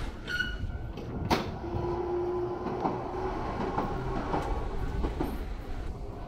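Commuter train running past on the line across the end of the street: a steady rumble with a short hum and several sharp clacks from the wheels.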